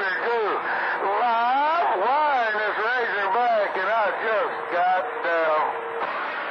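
A voice coming in over a CB radio receiver on channel 28 by long-distance skip, heard through the radio's speaker with a thin, narrow sound and wide swings in pitch.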